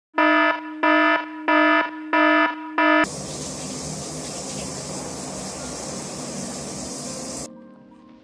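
An electronic alarm beeping five times in quick succession, then a shower running as a steady hiss that stops suddenly near the end.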